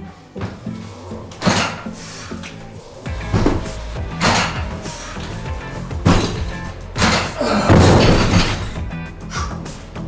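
Music playing, with a loaded barbell knocking against the lifting platform several times during clean pulls. The loudest knock comes at about 7 to 8 seconds, as the bar is set back down.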